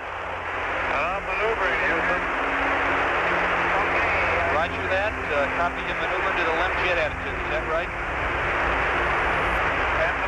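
Archival Apollo space-to-ground radio heavy with static: a steady hiss and low hum, with faint, indistinct voices underneath.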